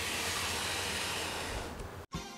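A steady, even hiss that cuts off abruptly at the end.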